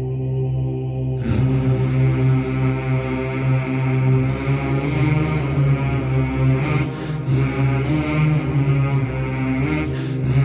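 Background music for an intro: a sustained chant-like vocal drone over a steady low hum, with a fuller, brighter layer coming in about a second in.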